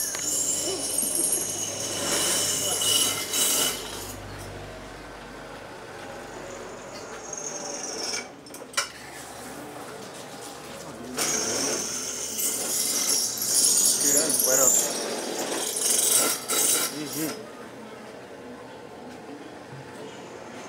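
Workshop noise: indistinct background voices mixed with two long stretches of loud, high-pitched machine noise, one near the start and one in the second half, and a single sharp click a little before halfway.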